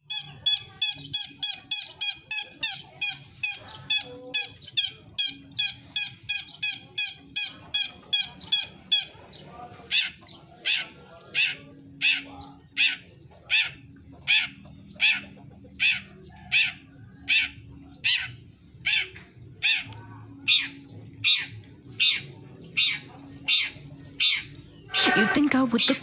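Caged songbird calling over and over: a fast run of short repeated notes, about three a second, for roughly the first nine seconds, then slower, sharper notes about one every three-quarters of a second.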